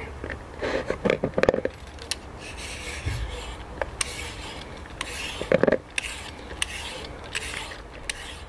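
Y-shaped vegetable peeler scraping the skin off a tromboncino squash in repeated strokes, each one taking off a long strip, with small clicks between strokes.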